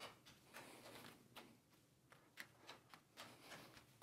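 Near silence with faint, soft ticks a few times a second, irregularly spaced: three juggling balls being thrown and caught in the hands in a Mills Mess pattern.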